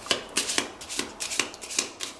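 A deck of Lenormand cards being shuffled and handled: a quick run of crisp card slaps and rustles, about four a second.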